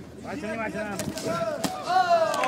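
Men's voices calling out, with a few sharp smacks about a second in and near the end: strikes landing in a quick exchange between two MMA fighters.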